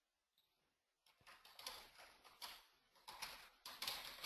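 Near silence: room tone, with faint scattered soft noises starting about a second in.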